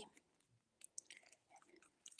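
Near silence with a few faint, scattered clicks and ticks as a plastic card is slid out of a slim card holder.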